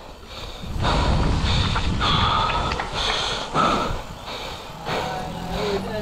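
Mountain bike rolling fast down a dusty trail: tyre rumble and bike rattle mixed with wind on the helmet-mounted microphone, and the rider breathing hard between his words.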